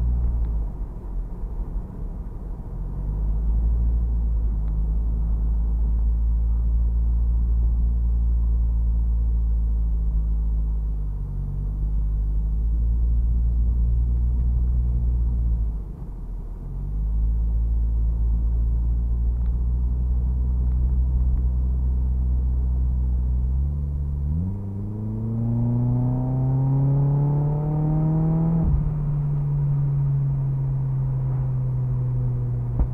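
Turbocharged Mazda MX5 engine and road rumble heard from inside the cabin, cruising steadily with two brief lifts about a third and halfway through. Near the end it accelerates, rising in pitch for about five seconds, then drops sharply into the next gear and runs on at a lower pitch.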